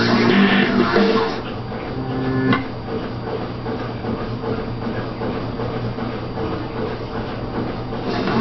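Music from a television, heard through the set's speaker, breaks off about a second and a half in. A held tone follows, ending in a single sharp click, then a steady low hum with hiss.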